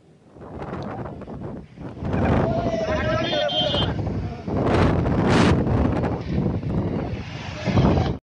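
Storm wind buffeting the microphone over breaking waves on a reservoir, a dense rushing noise that grows louder about two seconds in. A brief wavering call or voice rises above it between about two and four seconds.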